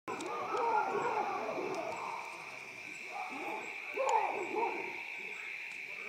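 Chacma baboons calling at night in two bouts of rising and falling calls; the second bout, about four seconds in, is the loudest. A steady high-pitched hum runs beneath.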